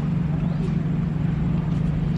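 A steady low mechanical hum at one unchanging pitch, like a motor or engine running at constant speed, over faint background noise.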